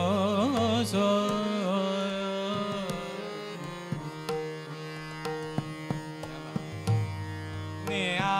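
Hindustani classical vocal music in Raag Chhaya Nat, with harmonium, tabla and tanpura. A sung phrase with ornamented glides ends about three seconds in. After that, steady held harmonium notes over the drone continue, with scattered tabla strokes.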